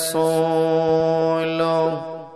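A man chanting Arabic sermon recitation through a microphone, holding one long melodic note at a nearly steady pitch. A short hiss of a consonant opens it, and the note stops near the end with a short trailing echo.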